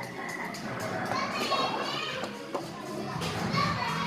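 Background hubbub of children's voices and chatter in a large indoor play hall, with faint music under it.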